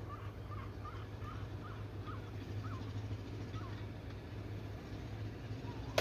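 A run of short bird calls, a few per second, that fades out after about three and a half seconds, over a steady low hum.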